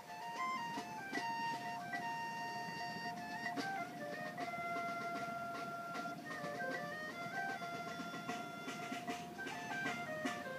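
Marching band playing: sustained notes moving in small steps over a long held tone, with mallet-percussion strikes from the front ensemble throughout.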